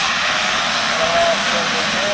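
A full field of motocross bikes accelerating hard together off the start line, their many engines blending into one dense, steady high-revving din.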